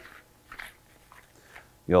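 Faint crinkling and a few light crackles of plastic packaging being handled as the end of a product package is opened and a small bag of fasteners is pulled out. A man starts speaking at the very end.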